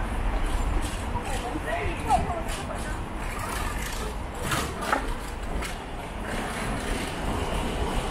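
City street ambience: a steady low rumble of road traffic with indistinct voices of passers-by and a few short clicks around the middle.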